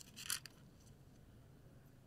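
A brief rustle of a plastic component carrier tape strip, loaded with switch sockets, being handled in the first half second, then faint room tone with a low hum.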